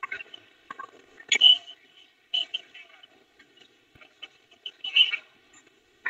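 Faint, indistinct voice fragments in short broken bursts over a video-call line, loudest about a second and a half in and again near five seconds.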